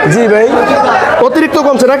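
Speech only: people talking, with overlapping chatter.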